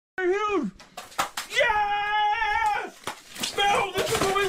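Men yelling and whooping in excitement over a freshly landed fish, including one long drawn-out yell in the middle, with a few sharp slaps just before it.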